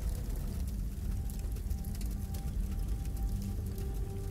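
Quiet background music: a low, steady drone with a faint high held note that comes in about a second in.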